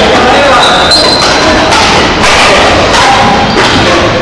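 Badminton play in a sports hall: several sharp hits and thuds from rackets striking the shuttlecock and players' feet on the court floor, over a background of voices.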